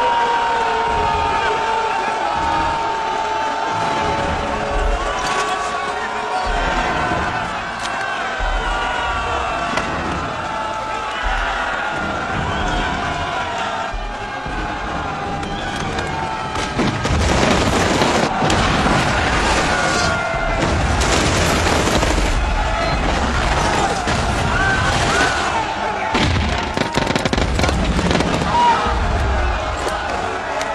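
Battle soundtrack from a war film: massed soldiers shouting as they charge, over a music score, then from about 17 seconds in a dense run of rapid rifle and machine-gun fire and explosions.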